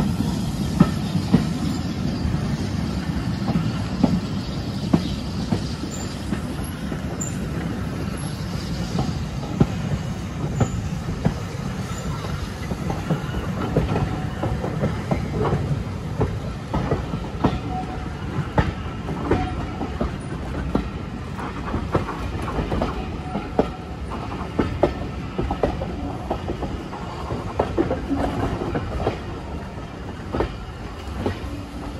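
Heritage train's carriage wheels rumbling over the track, with irregular clicks as they cross rail joints and pointwork, heard from a carriage window.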